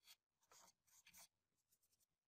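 Very faint, scratchy brushing strokes, a few in quick succession, as a fingertip brushes sawdust off the pocket hole jig around its dust port.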